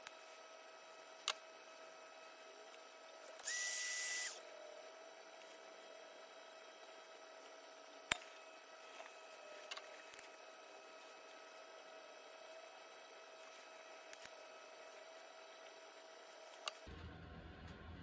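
Quiet hand work at a metal fuel tank during glue-pull dent repair: scattered small clicks, the loudest about eight seconds in, and one short hiss with a faint whistle lasting under a second about three and a half seconds in. A faint steady whine runs underneath.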